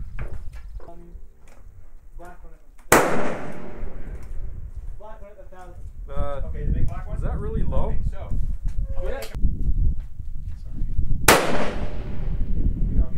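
Two rifle shots about eight seconds apart, each a sharp crack followed by a trailing echo, from a Remington 700 SPS Varmint chambered in .308 Winchester.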